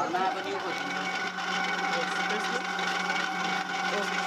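A potter's wheel motor running with a steady hum that sets in about a second in, under faint voices.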